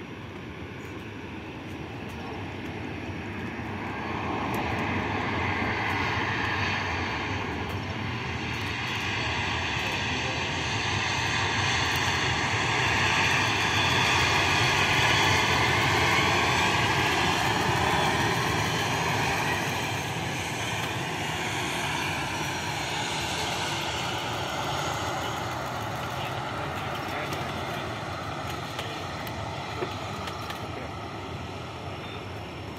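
Jet airliner passing, a steady engine rumble that builds, peaks near the middle and slowly fades, with whining tones drifting lower in pitch as it goes by.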